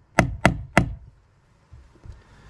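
Hammer striking the steel punch of a press-stud setting tool, driving it through a fabric strap on a plywood board to punch a hole. There are three quick metal-on-metal knocks about a third of a second apart in the first second.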